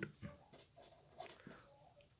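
Pen writing on paper: faint, short scratching strokes as a word is written by hand.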